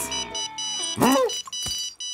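Electronic mobile phone ringtone, a pattern of high beeping tones, broken about a second in by a short cartoon vocal yelp.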